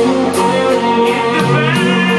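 Rock band playing live, with drums beating out a steady rhythm of about three hits a second over guitar.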